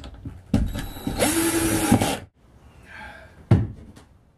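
Cordless drill driving a screw into the pod's panel: the motor spins up about half a second in, its whine rises and holds for about a second and a half, then stops. A single sharp knock follows near the end.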